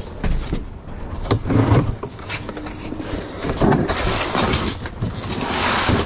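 Cardboard boxes and paper packaging being handled, rustling and scraping, louder over the last two seconds.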